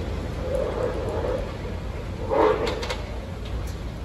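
Demolition excavator working on the remains of a concrete building: a steady low rumble with a short grinding screech about half a second in and a louder one a little past halfway, followed by a few sharp knocks.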